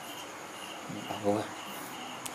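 Steady high insect-like chirping, repeating about three times a second. About a second in, a brief low human voice sounds over it.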